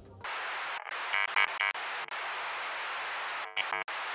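Glitch-style logo sting: a static-like hiss that starts abruptly, broken by rapid stuttering pulses about a second in and again near the end, then cuts off.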